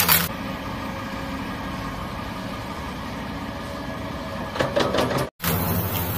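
A steady mechanical hum like an engine idling, with a few clicks and knocks near the end and a brief cut-out just before it ends.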